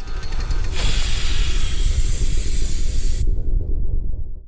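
A loud steady hiss over a low rumble, beginning about a second in and cutting off suddenly about three seconds in; an inserted sound effect between podcast segments.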